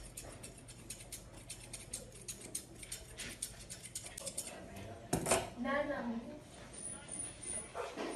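Grooming scissors snipping quickly through a dog's facial fur, a rapid run of small metallic clicks that stops about four and a half seconds in. A louder knock follows about five seconds in.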